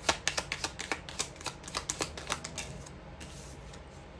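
A tarot deck being shuffled by hand: a quick, irregular run of sharp card clicks for about two and a half seconds, easing into softer card handling near the end.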